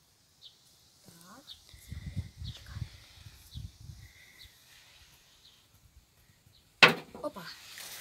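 Soft footsteps on grass, about two a second, approaching, then near the end one sharp, loud slap as the rim of a butterfly net comes down onto a rusty sheet of metal to trap a lizard.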